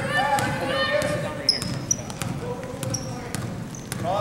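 A basketball dribbled on a hardwood gym floor, a run of repeated bounces, with voices calling around it.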